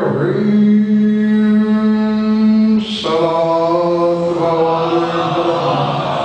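A man's voice chanting into a microphone in long, drawn-out notes: one held note of nearly three seconds, a sharp breath about three seconds in, then a second, lower held note.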